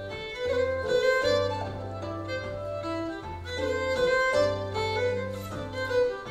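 Fiddle and lever harp playing a traditional tune together. The harp plucks a low bass line that changes about once a second under the fiddle's bowed melody.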